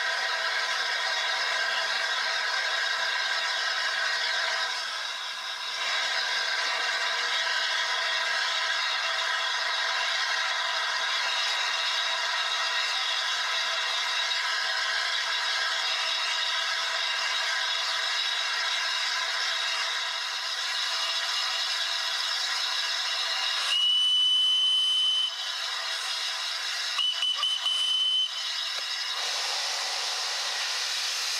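The LNER A3 Pacific steam locomotive Flying Scotsman standing with a steady hiss of escaping steam. Near the end come two high-pitched whistle blasts, the first about a second and a half long and the second about a second long.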